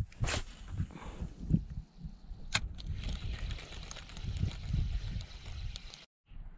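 A cast and retrieve with a spinning rod. A short swish comes just after the start and a sharp click about two and a half seconds in. From about three seconds in, the spinning reel is cranked with a steady whir, over low rumble.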